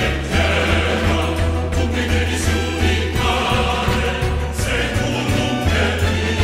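Theatre orchestra playing a dramatic passage with a choir singing, over deep sustained bass notes that shift a few times.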